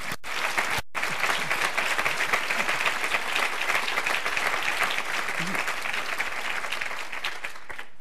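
Audience applause, many hands clapping together, starting about a second in and easing off slightly near the end.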